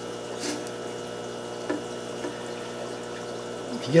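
Steady low hum of aquarium equipment, with a short splash of water about half a second in as a hand works in a shallow tank, and a couple of faint small knocks later.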